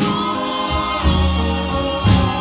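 Vintage soul song recording: sustained chords over a low bass line, with the chord changing about halfway through.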